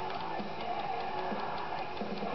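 A timer ticking steadily over quiet background music with guitar.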